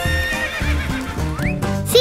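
A horse whinny sound effect over light children's background music.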